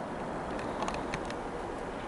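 Quiet, steady room noise with a few faint clicks between about half a second and a second and a half in, from a plastic model railway wagon being handled.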